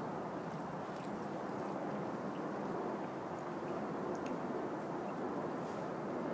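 Steady outdoor background noise with a few faint, soft clicks scattered through it.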